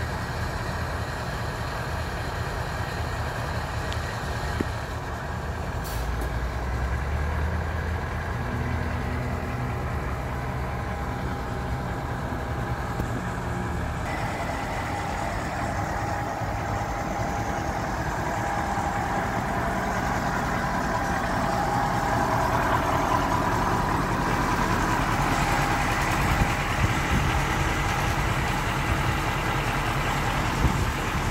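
1979 Kenworth W900L big-rig diesel engine idling steadily, with a higher steady tone joining about halfway through and the sound growing louder in the second half.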